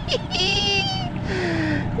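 A person's high-pitched, drawn-out excited squeal, followed by breathy laughter, in delight at a just-landed fish.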